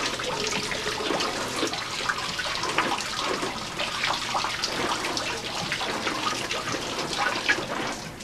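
Steady running and splashing water.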